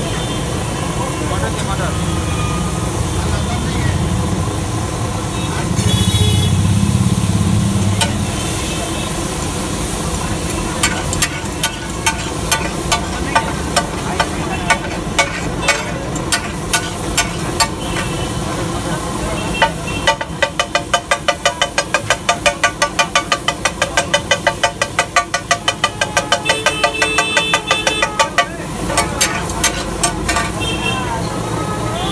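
Metal spatula striking and scraping a large flat iron griddle as tomatoes and capsicum are chopped and stirred in butter. The strikes come about one and a half a second, then quicken to three or four a second from about twenty seconds in. All of it sits over steady street noise with background voices.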